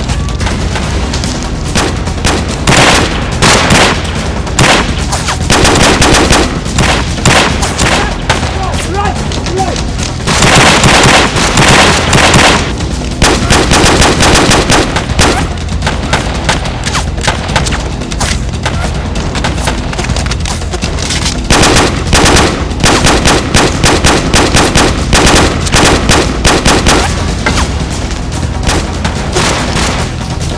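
Rapid bursts of automatic gunfire in an action-film shoot-out, shot after shot in long runs. The longest, densest burst comes about ten seconds in, and another stretch of bursts follows in the latter half.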